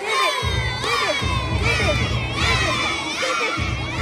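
A group of young girls shouting and cheering together, many high voices at once. A low beat runs underneath, dropping out briefly near the start and again shortly before the end.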